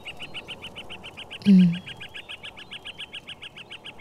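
A rapid, even series of high chirps, about seven a second, from an animal call in the background. A man's short 'ừ' grunt comes about one and a half seconds in.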